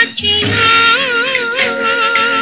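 Early-1960s Tamil film song with orchestral backing: after a brief break, a singer holds one long, wavering note from about half a second in.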